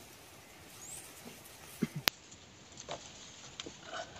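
Light creaks, knocks and rustles of a bamboo-slat floor and palm fronds as a person crawls over them, coming in as scattered small clicks after about two seconds.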